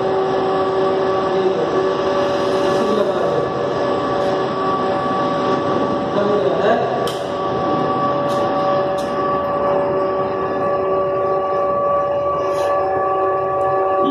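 Steady electrical hum with several overtones over an even background noise, with a few sharp clicks in the middle, from the sodium vapour lamp's ballast and ignitor circuit under test.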